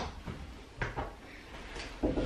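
A few light knocks and clicks from things being handled at a makeup vanity: a sharp click at the start and two more about a second in.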